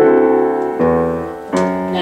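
Piano striking three chords, each left to ring, about three quarters of a second apart, with an upright bass sounding underneath.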